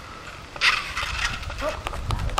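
Short, wordless voice sounds: a loud breathy burst about half a second in, then brief voice fragments, with a couple of sharp knocks near the end.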